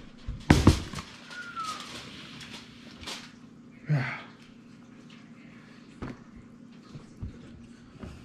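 A metal roasting pan set down hard on a kitchen counter, one loud clatter about half a second in, followed by faint rustling and a few light clicks as its aluminium foil cover is handled and pulled off.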